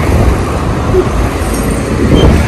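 Steady road traffic noise from cars passing on the street, with a low rumble.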